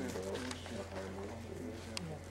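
Pigeons cooing, low rolling calls repeated over a steady low hum.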